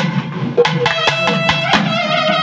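Naiyandi melam folk temple music: thavil drums struck with sticks in a fast rhythm of about four strokes a second, under a held, reedy nadaswaram melody.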